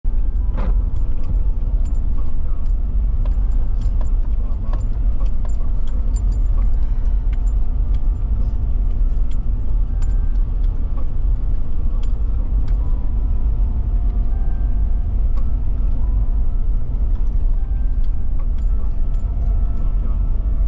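A car heard from inside the cabin as it drives downhill on a wet road: a steady, loud low rumble of engine and tyres, with many small scattered ticks and clicks over it.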